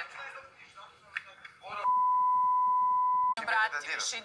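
A single steady beep tone, about a second and a half long, starting a little before the middle and cutting off abruptly, with speech just before and after it: a television censor bleep laid over a spoken word.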